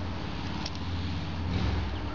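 Steady low hum and hiss of background noise, with a faint click about two-thirds of a second in.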